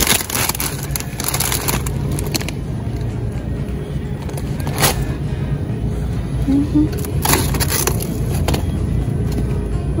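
Plastic packaging of frozen shrimp rustling and crackling in short bursts as it is handled, over a steady low hum with music in the background.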